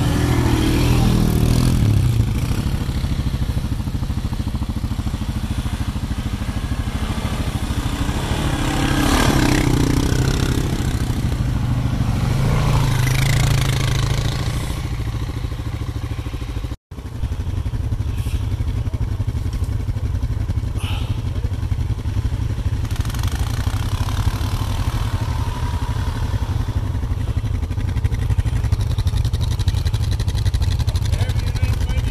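ATV engines running in a group, swelling louder as they rev a few times in the first half. After a sudden break about two-thirds of the way through, a steadier low engine idle with a few light clicks.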